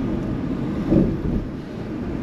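Car running slowly along a city street, heard from inside the cabin as a steady low engine and road rumble, with one brief louder low sound about a second in.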